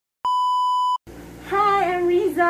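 Steady test-tone beep, the kind that plays over colour bars, lasting under a second and cutting off sharply. After a brief silence a low room hum comes in, and a woman's voice starts about halfway through.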